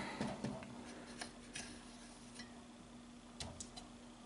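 Faint scattered clicks and light taps, about half a dozen, two of them close together near the end, from a hand handling the metal amplifier case and fan grill guard. A low, steady hum runs underneath.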